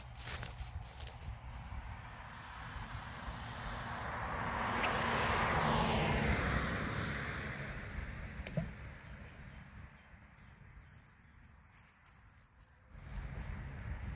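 Fishing line hissing off a carp rod's reel spool during a long cast. The hiss swells for a few seconds with a falling pitch, then fades away. A single sharp click comes partway through.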